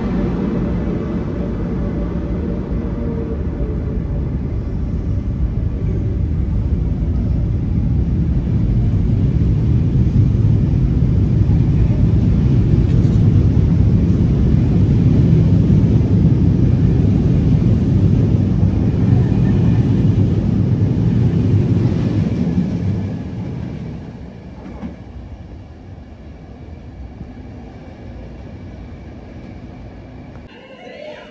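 Passenger coaches of a departing electric-hauled train rolling past on the rails, a low rumble of wheels and bogies that grows as the train gathers speed, echoing in an underground station. The rumble falls away sharply a little after three-quarters of the way through.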